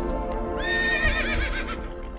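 A horse whinnying over background music: a single call beginning about a quarter of the way in, a high held note that breaks into a quavering fall.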